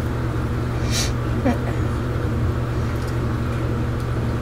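A steady low hum, with a short scrape about a second in as a silicone spatula stirs melting oils and lye in a plastic tub.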